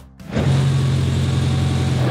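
Ice resurfacer's engine running with a steady low hum, setting in about a third of a second in, with background music over it.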